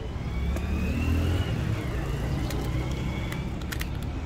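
A motor vehicle's engine rising in pitch and then falling away over a steady low rumble of traffic, with a few light clicks.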